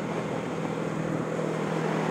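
Motorcycle engine running steadily while riding, its pitch holding level, under a steady rush of wind noise.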